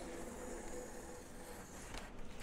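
Faint sound of a sharp utility knife blade drawing steadily through thin plastic window film along a metal ruler, with a faint steady hum behind it.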